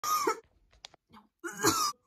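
A girl coughing into her elbow: two loud, voiced coughs, one at the start and one about a second and a half in, with small breathy sounds between.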